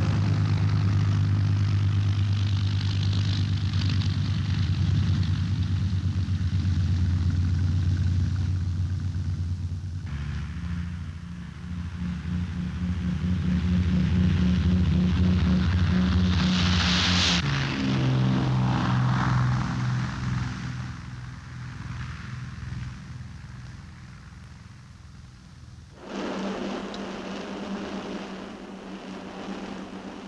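A de Havilland Mosquito's twin Rolls-Royce Merlin engines running loud and steady on the ground, then the aircraft taking off. The engine sound swells to a peak a little past halfway and then fades away. Near the end a steady engine drone comes in abruptly, heard from inside the cockpit.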